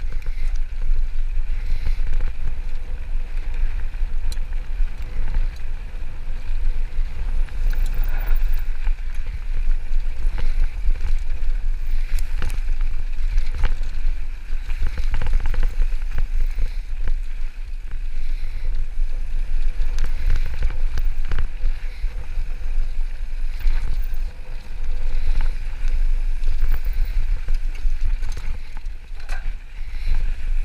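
Wind rumbling on the microphone of a handlebar-mounted action camera during a fast mountain-bike descent, with the tyres rolling on a dirt trail and the bike rattling and knocking over bumps throughout.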